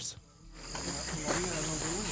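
Rainforest insects keeping up a steady high-pitched chorus that fades in about half a second in, with faint wavering calls beneath it.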